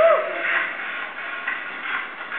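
Background voices chattering, with a short rising-and-falling cry right at the start, the loudest sound here.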